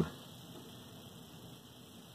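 Quiet pause: faint steady room tone and hiss, with no distinct sound.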